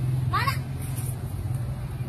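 A low, steady engine hum that grows quieter about half a second in, with a brief rising vocal cry near the start.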